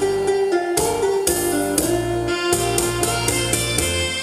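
Instrumental intro of a Korean trot song played from a backing track: a sustained lead melody over bass and regular drum hits, with no vocal yet.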